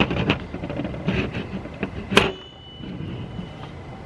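Handling clicks of a slingshot's rubber band being fitted, then one sharp snap about two seconds in as the band's tie comes undone and the band springs loose, followed by a faint ringing.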